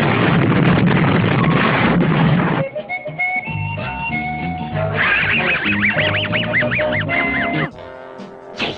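A cartoon explosion blast fills the first two and a half seconds. Pitched cartoon music follows, and from about five seconds in the cartoon dog Muttley gives his wheezing, rhythmic snicker over the music.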